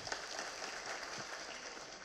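Faint, steady audience applause.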